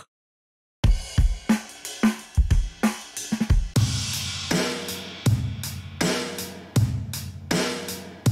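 Acoustic rock drum-kit loop auditioned from a sample library: kick, snare, hi-hat and cymbals playing a steady beat. It starts after almost a second of silence, and a bright cymbal wash joins about halfway through.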